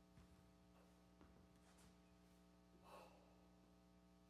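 Near silence: the hall's room tone with a steady low hum, a few faint ticks and one soft, brief breath-like rustle about three seconds in.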